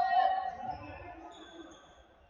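A futsal ball bouncing on the wooden floor of a large sports hall, with a man's drawn-out shout in the first second that fades away. The hall's echo trails after both.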